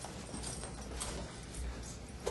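Faint footsteps, a few soft knocks about a second apart, over a low room hum.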